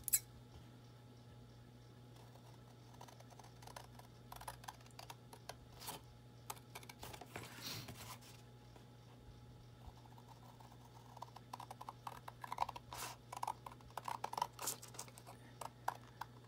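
Faint handling of paper and card stock, with scattered small clicks and rustles that grow busier near the end, over a steady low hum.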